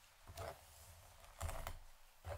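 A fine-tooth comb drawn down through long straight hair, in two short rustling strokes: a brief one about half a second in and a longer, louder one around one and a half seconds in.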